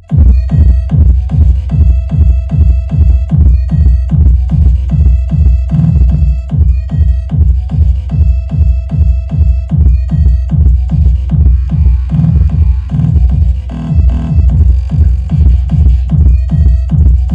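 Electronic dance music with a heavy kick drum about twice a second, played loud through a 15-inch Eros Target Bass car-audio woofer in a box as a low-power music test, about 1000 W. The track cuts in sharply after a brief drop at the very start, as the signal is switched over to the woofer.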